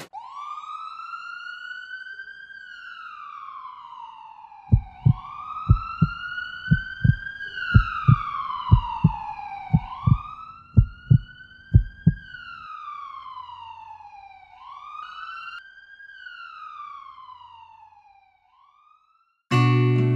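Emergency-vehicle siren wailing, each rise quick and each fall slow, about every two seconds, fading out near the end. Through the middle comes a string of deep thumps, mostly in pairs; just before the end acoustic guitar music starts.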